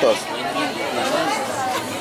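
Indistinct chatter of people talking at a market stall, voices overlapping at a steady level without any clear words.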